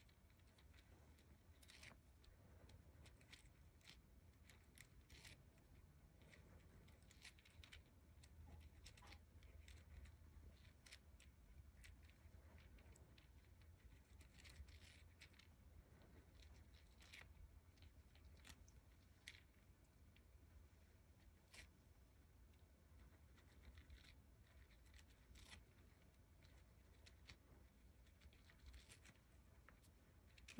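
Near silence, with faint, irregular scratches and ticks of a ball-tipped embossing stylus being rubbed in small circles over paper petals on a foam mat, cupping each petal into a spoon shape. A faint low hum of room tone lies underneath.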